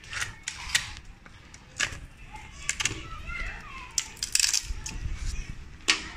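Steel bonsai cutters biting into the bark and wood of a bantigue branch as it is carved, giving a string of sharp cracks and clicks, about ten in six seconds.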